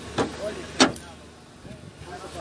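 Two sharp knocks about half a second apart, the second louder, with a short faint voice between them.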